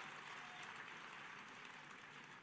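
Near silence: faint background noise of a large audience venue, slowly fading.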